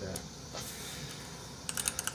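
Computer keyboard typing: a quick run of keystrokes begins near the end, typing into a search box.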